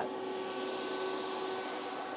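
Steady fan hiss with a faint hum from the Mr. TIG Series PowerPlasma 50 plasma cutter standing switched on between cuts, with no arc running.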